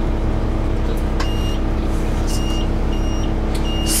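Inside a Gillig transit bus: the bus's engine running with a steady drone, and four short high electronic beeps from a dashboard buzzer, roughly a second apart.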